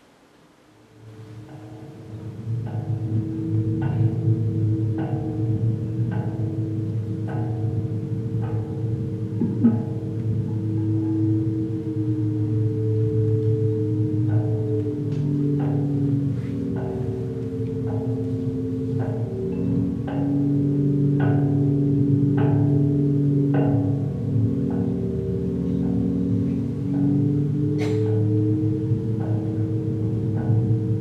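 Recorded experimental electroacoustic music played back, fading in over the first couple of seconds: several held low tones that slowly shift in pitch, under struck pitched notes repeating evenly about one and a half times a second. A single sharp click sounds near the end.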